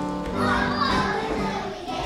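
A group of young children's voices over instrumental music with long held notes.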